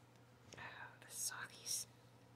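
A woman whispering a short phrase, with hissy 's' sounds near the end.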